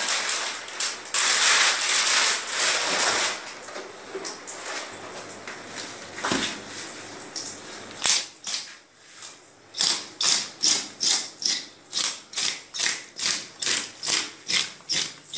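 Scales being scraped off a large catla fish with a hand scaler: short, sharp rasping strokes in a quick even rhythm, about two to three a second, from about eight seconds in. Before that, a stretch of rustling and handling noise.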